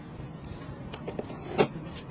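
Plastic cling film rustling and crinkling as hands handle and press it around food, with one sharp snap about one and a half seconds in.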